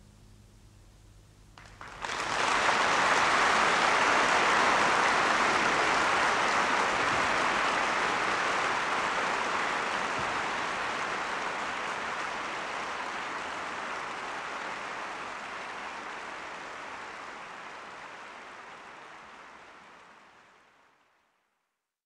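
Audience applauding at the end of a live orchestral and choral performance: after a faint pause the applause breaks out suddenly about two seconds in, holds steady, then fades out gradually over the last ten seconds or so.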